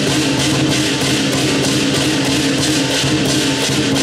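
Southern lion dance percussion: the big lion drum with clashing cymbals, keeping a fast, even beat of about four to five crashes a second over a steady ringing.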